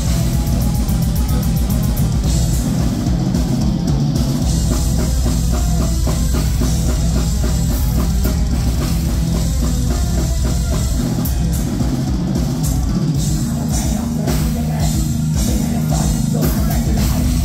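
Symphonic black metal band playing live at full volume: a drum kit with dense, rapid strokes under distorted electric guitar and heavy bass, heard through the venue's PA from the audience floor.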